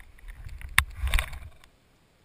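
Handling noise on a GoPro camera: a sharp knock under a second in, then a cluster of knocks and rubbing as it is set down on grass.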